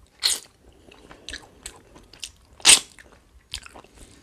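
Close-up crunchy chewing of fried fish: a string of short, crisp crunches at irregular intervals, the loudest about two and a half seconds in.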